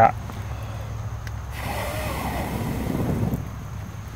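Rustling handling noise as the camera is jostled and brushes against a shirt, over a low rumble. It swells about halfway through and fades near the end.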